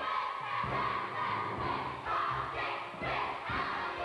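A chorus of young women's voices singing loudly in unison, with a few thuds from dancing feet on the stage.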